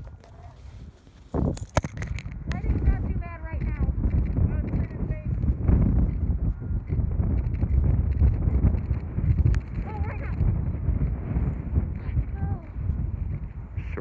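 Wind buffeting the microphone: an uneven low rumble that starts with a knock about a second and a half in, with faint distant voices now and then.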